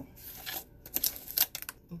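Screw lid being twisted off a small jar of sugar body scrub: a run of scraping, crackling clicks, loudest about a second in and again shortly after.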